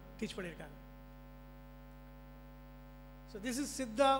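Steady electrical mains hum from the microphone and sound-system chain, heard plainly in a pause between a man's speech, which breaks off early and resumes near the end.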